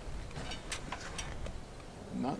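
A few light clicks and knocks over the first second and a half, from PVC rainwater pipe being handled and fitted into place.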